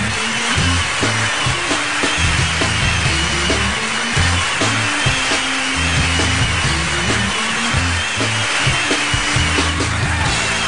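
Talk-show theme music played by a rock band. A bass riff repeats a short figure every few seconds under steady drum hits and a constant hiss of cymbals.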